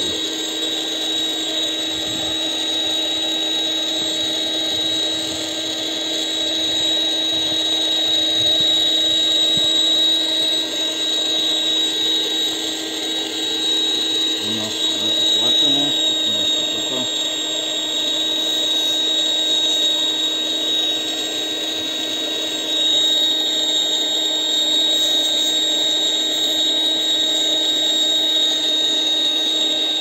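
Parkside PKA 20-LI A1 cordless air pump running in suction mode, drawing air out of an inflatable mattress through its hose: a steady motor hum with a high, constant whine.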